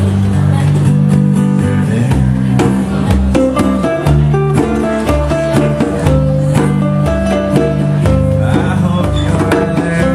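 Live acoustic music: two acoustic guitars playing together over a steady beat on a hand drum.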